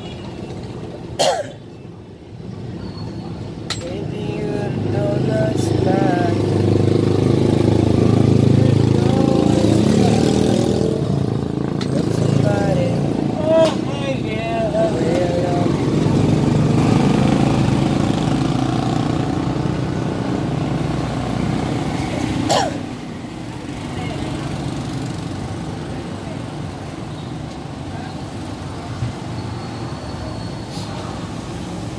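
A low engine-like rumble swells up about four seconds in, holds, and eases off a little after twenty seconds. There is a sharp click shortly after the start and another near the point where the rumble eases.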